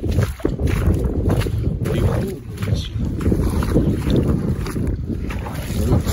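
Strong wind buffeting the microphone: a loud, gusting low rumble.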